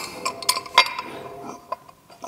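Several light metallic clinks, some with a short ringing after them, as an aluminum motor-mount adapter and its bolts are handled and set against the engine block.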